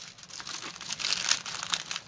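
A rolled diamond-painting canvas and its clear plastic cover film crinkling under the hands as it is pressed and straightened to lie flat, with a quick run of irregular crackles.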